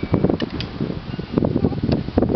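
Hard plastic wheels of a toddler's ride-on trike rolling over rough asphalt: a continuous rattling rumble with many irregular clicks.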